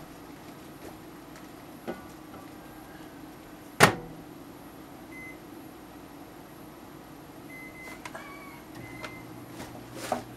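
Microwave oven being started: its door shuts with a sharp clack about four seconds in, a few faint keypad beeps follow, and the oven starts humming near the end as it begins heating.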